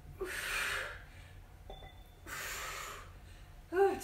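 A woman breathing hard from exertion during a dumbbell curl-and-press set: two heavy, breathy exhalations, one a fraction of a second in and another about two and a half seconds in.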